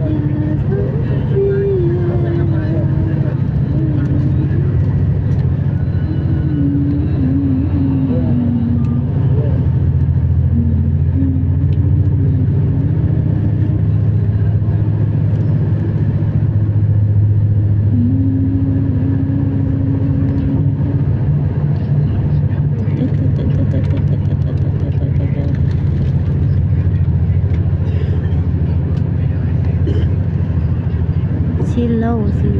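Steady low road and engine rumble of a moving vehicle, heard from inside it. A voice sounds faintly over it now and then, mostly in the first dozen seconds and again briefly past the middle.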